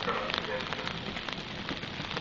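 Steady rain pattering, with many small drop ticks.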